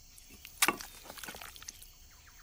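Food being dished into a bowl: one sharp knock a little over half a second in, then a few faint light clicks.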